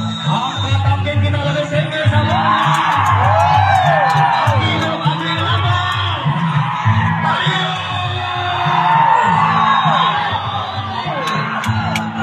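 A large crowd of men shouting and whooping, their cries rising and falling, over a steady rhythmic drumbeat.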